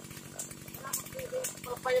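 A small petrol engine running steadily at a low idle with an even, rapid pulse.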